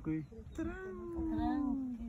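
A cat meowing: one long meow that rises briefly and then falls steadily in pitch.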